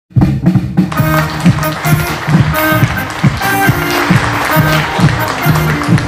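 Live band playing a song's instrumental intro: a drum kit keeps a steady beat under electric guitars and an electronic keyboard, with the bass line moving underneath.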